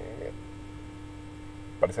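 A steady low hum, one unchanging tone, during a pause in a man's speech. His voice trails off just after the start and picks up again near the end.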